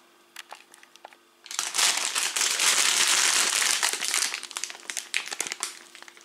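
Plastic bag of marshmallows crinkling as it is handled and turned over: a few soft crackles, then about a second and a half in a loud, dense crinkling for roughly three seconds, fading back into scattered crackles.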